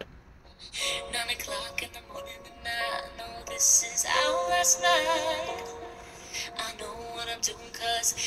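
A woman singing a slow pop song over piano accompaniment, her held note wavering with vibrato about four seconds in.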